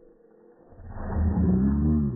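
A motor vehicle's engine passing close by, swelling over about a second, staying loud, then fading away.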